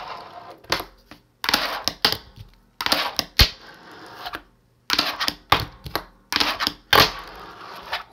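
A fingerboard rolling on a wooden desk on its Cartwheels wheels, with sharp clacks as the deck pops and lands tricks, in about five runs separated by short pauses.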